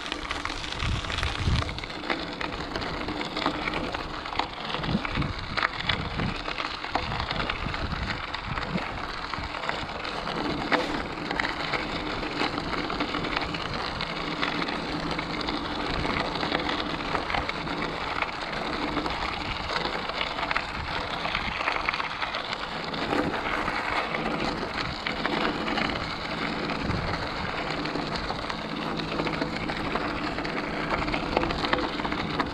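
Mountain bike tyres rolling over a gravel trail: a steady crackle of crunching stones with small clicks and rattles from the bike, and some low thumps in the first several seconds.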